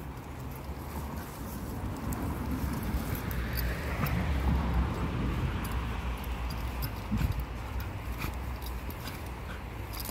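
Two dogs digging in dry, sandy soil, their paws scraping and scratching at the dirt in a steady rustling haze, with a low rumble underneath.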